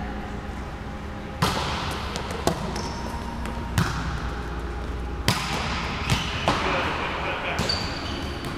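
Volleyball being hit and bouncing on the court: about seven sharp slaps, the loudest about a second and a half in and again about five seconds in, each echoing in a large gym hall.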